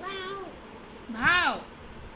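A cat meowing: a short call, then a louder rising-and-falling meow about a second and a quarter in.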